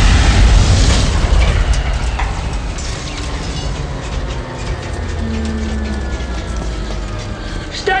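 Deep rumble of a giant robot's crash landing in snow, loud at first and slowly dying away over several seconds, with film score underneath.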